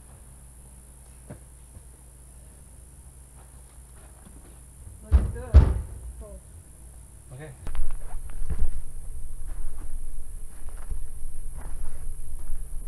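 Two heavy knocks about half a second apart, about five seconds in, as the IBC tote's cage and plastic tank are handled on the wooden stand. From about eight seconds on, a rough, uneven low rumble, with a faint steady insect buzz behind it all.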